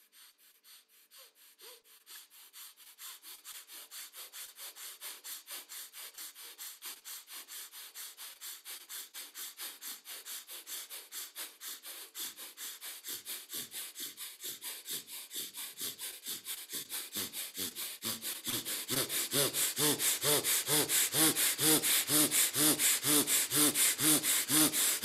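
Rapid, forceful breathing through the left nostril, the right nostril held shut by a finger: a quick, even rhythm of short breaths that grows steadily louder and harsher toward the end. It is the breathwork that activates Ida, the left-side energy channel.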